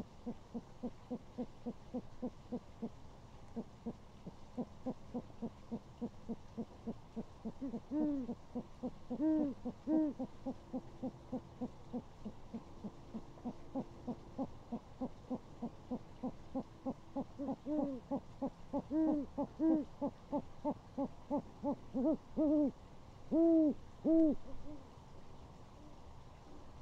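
Great horned owls hooting: a long, rapid run of short, low hoots, about three or four a second, with louder, drawn-out hoots breaking in near the middle and again near the end.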